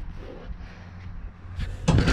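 Low steady rumble, then a sudden knock near the end followed by rubbing and scraping as a hand grabs the camera on the truck bed.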